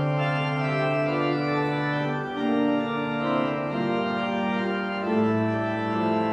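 Church organ playing a postlude, with held chords that change every second or so and a bass line that steps lower near the end.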